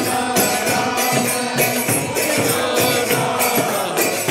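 Devotional group chanting of a mantra, with a percussion instrument striking a steady beat of about two to three strokes a second.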